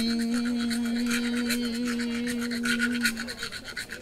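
A voice holds one long sung note that stops about three seconds in, over a fast, even scraping rhythm from a hand percussion instrument.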